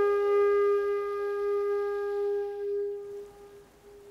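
Background music: a flute holds one long low note after a quick run of notes, fading away about three seconds in.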